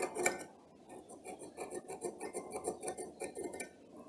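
A pointed metal tool scratching an alignment mark into a washing-machine motor's metal end cover: a couple of small clicks, then a run of short, quick scraping strokes.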